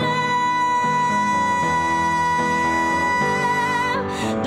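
A woman singing one long held high note, steady and nearly without vibrato, over upright piano chords that change about every second.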